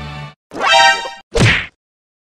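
Stock comedy sound effects played one after another: a music clip cuts off, then a short pitched sound lasting under a second, then a sharp whack.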